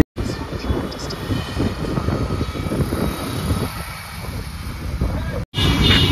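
Steady low rumble of outdoor background noise, cut off abruptly at both ends by edits.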